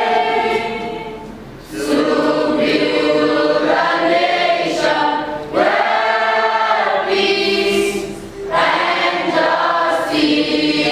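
A group of school students singing together as a choir, in long held phrases with brief pauses for breath about two, five and a half, and eight and a half seconds in.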